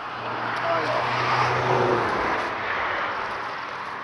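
Engine noise of a passing vehicle, swelling to its loudest about a second and a half in and then slowly fading, with a low steady hum under it for the first two seconds.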